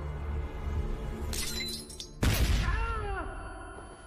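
Tense film score with low sustained drones, cut by a loud crash of shattering glass about two seconds in that rings away as it fades.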